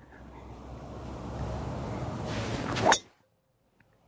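Wind rushing on the microphone, growing louder, then a single sharp metallic crack of a driver striking a teed golf ball about three seconds in. The sound cuts off abruptly just after the strike.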